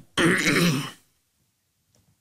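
A man clearing his throat once, for about a second, between phrases of speech.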